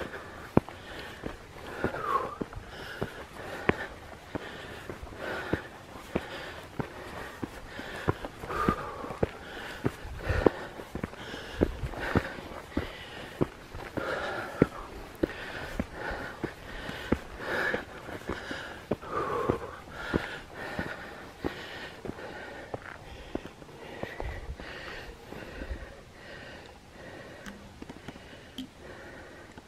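A hiker breathing hard while climbing a steep granite slab, with shoes tapping and scuffing on the bare rock.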